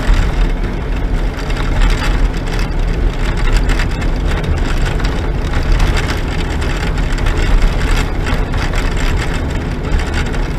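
Inside a vehicle's cab on a dirt road: steady engine drone and low tyre rumble, with irregular knocks and rattles as it goes over bumps.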